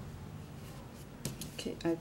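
Soft handling noise with a few light clicks a little past a second in, from hands working a small crochet pouch and its yarn drawstring. A woman starts speaking near the end.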